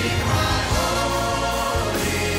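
Large church choir singing a worship song over steady instrumental accompaniment.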